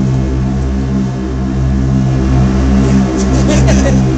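Live band's low synthesizer drone, loud and pulsing in an even rhythm, leading into a song.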